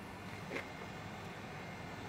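Faint background ambience: a steady low hum under light hiss, with one brief soft sound about half a second in.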